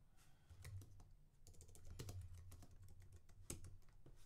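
Faint typing on a computer keyboard: a quick, uneven run of key clicks, busiest in the middle.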